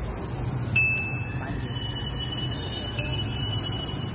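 Turkish ice cream vendor's brass bell struck three times, twice in quick succession about a second in and once more near three seconds, each strike ringing on with a high clear tone.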